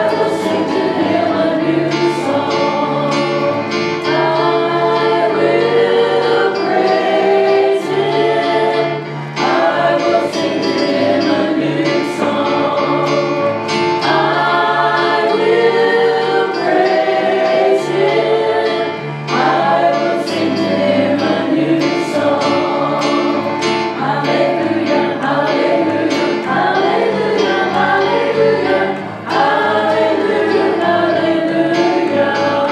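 A trio of women sing a gospel song in harmony into hand microphones over an instrumental accompaniment with a steady bass line and a regular beat. The singing runs in phrases with short breaths between them.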